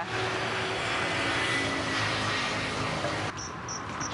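A steady rushing noise with a faint low hum, like a running vehicle. It breaks off suddenly near the end into a quieter background where short, high chirps sound a couple of times.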